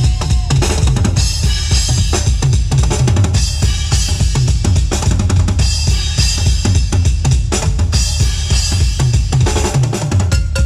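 Yamaha acoustic drum kit played in a busy, steady beat: kick drum, snare and cymbals throughout, picked up by the Yamaha EAD10 drum mic system.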